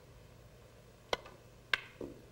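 Snooker shot: the cue strikes the cue ball, then the cue ball cracks into the pack of reds, two sharp clicks a little over half a second apart.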